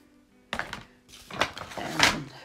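Hands moving small die-cut cardstock pieces about on a craft mat: a few short rustles and taps, starting about half a second in, with the strongest near the middle and again at the end.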